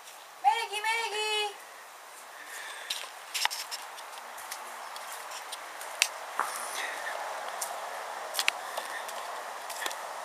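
A person's high, wavering sing-song call, about a second long, half a second in, followed by scattered faint clicks and rustles over a low outdoor background.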